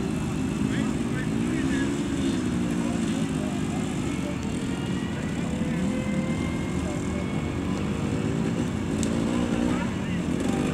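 Vintage off-road motorcycle engines running, revving up and down unevenly as a rider pulls away along a muddy track.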